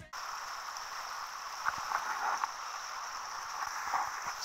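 Steady rush of water churned up by a boat moving at speed across a lake, with a few brighter splashes about two seconds in.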